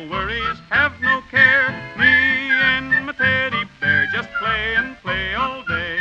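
A male singer yodeling without words in quick leaps of pitch, over a country-style band accompaniment with a steady bass.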